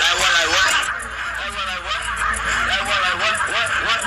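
A man's voice in short phrases that rise and fall in pitch, over a backing track.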